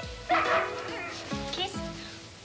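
A dog barking in short bursts over soft background music.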